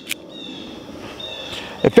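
A single sharp click from handling a Bauer .25 ACP pocket pistol, followed by faint high chirping in the background.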